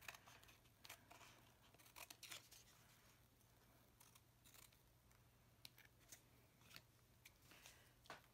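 Faint scissor snips trimming paper, a few scattered short cuts, with quiet paper handling between them.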